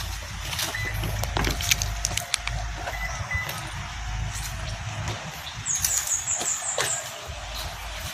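Sedan's rear door being handled and opened, with sharp clicks over a low rumble. Near the end comes a run of quick, high chirps, like a small bird.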